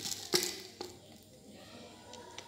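Two short clicks about half a second apart, the first louder, as a small plastic bottle of 6 mm airsoft BBs is set down on a table while the pistol's magazine is handled.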